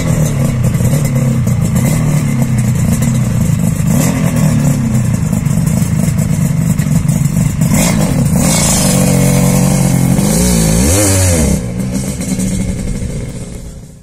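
Honda NS500R two-stroke motorcycle engine running just after start-up, its idle wavering as the throttle is blipped. About two-thirds of the way through it revs louder, with one rise and fall in pitch, then drops away and fades out near the end.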